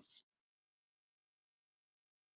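Near silence: a pause between spoken sentences, with the call audio dropping to nothing.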